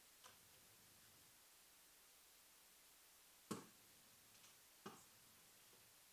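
Near silence: room tone broken by a few faint, brief clicks or knocks, the loudest about three and a half seconds in.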